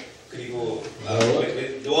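Speech only: a man talking, after a brief pause at the start.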